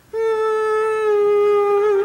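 A man's voice holding one long, high sung note, steady at first and wavering into vibrato near the end.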